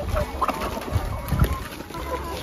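Flock of laying hens clucking with a few short calls as they crowd in to feed on cauliflower leaves. Two soft thumps come about halfway through.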